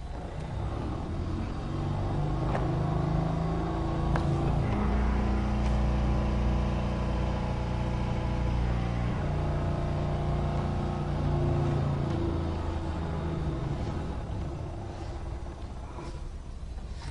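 High-pressure fluid pump running steadily under load, its hum shifting pitch a few times, as it drives fluid into a legacy coax cable to push the cable's core out.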